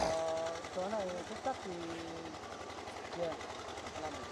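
Faint talk of several people at a distance, over the steady, evenly pulsing low hum of a small engine running.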